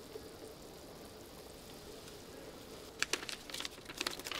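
Faint steady background hiss, then about three seconds in a quick run of crisp rustles and clicks as sheets of paper are handled and leafed through.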